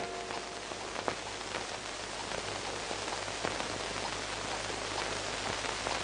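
A steady, even hiss, with a few faint clicks.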